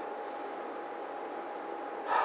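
Steady hiss of room tone and recording noise, with a thin constant whine.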